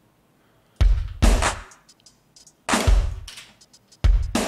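A New Jack Swing drum beat played from one-shot samples in a software drum sampler. After a short pause, heavy kick-and-snare hits land, with light hi-hat ticks between them.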